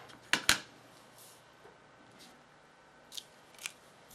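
Two sharp clicks close together about a third of a second in, then a few faint ticks, from clear stamps and card stock being handled and pressed down on the work surface.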